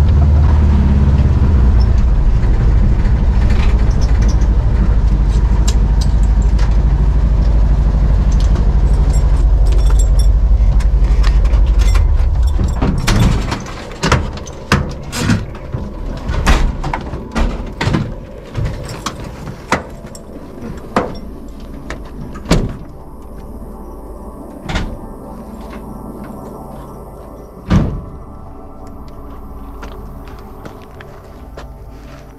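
Volkswagen Kombi van's engine running with a steady low rumble, cutting off about twelve seconds in as the van is stopped. Then comes a run of separate knocks and clunks as doors are opened and shut, with a louder slam near the end.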